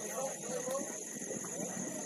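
Distant voices of players and spectators calling out across an open football pitch, with scattered faint knocks and a steady high-pitched hiss behind them.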